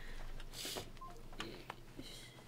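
Faint, brief electronic beeps from a smartphone being tapped, with a few light clicks.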